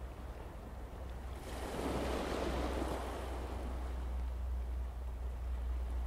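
Wind on the microphone: a steady low rumble with a louder rush of wind noise swelling up about one and a half seconds in and easing off after about three seconds.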